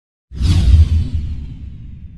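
Cinematic whoosh sound effect with a deep booming rumble underneath, from an animated logo intro. It hits suddenly just after silence, the airy hiss thinning out within about a second while the low rumble fades slowly.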